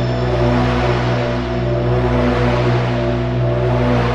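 Electronic album music: a sustained low synthesizer chord or drone held steady, under a wash of hiss.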